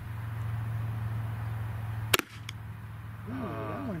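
A 12-gauge shotgun fires a single low-velocity shot, a reduced load sending a nylon-and-copper Grimburg HP68 less-lethal projectile, about two seconds in. A fainter crack follows a moment later.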